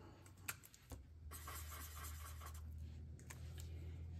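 Faint scratching and rustling of paper being handled on a tabletop: a paper savings-tracker card and stickers being worked by hand, with a couple of small clicks about half a second and a second in.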